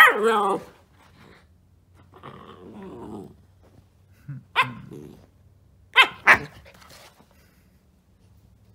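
Siberian husky puppy barking in short, sharp yips, with a rougher growling grumble a couple of seconds in and two quick barks about six seconds in.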